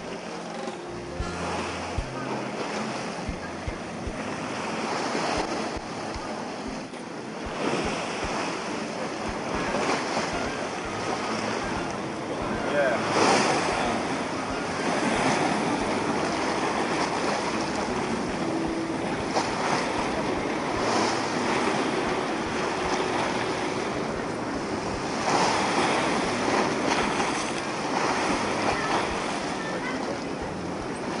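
Sea surf washing and breaking against shoreline rocks, swelling and easing every few seconds.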